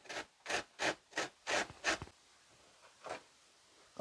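Lemon being zested on a metal box grater: about six quick grating strokes of the peel across the blades in the first two seconds, then one more near the end.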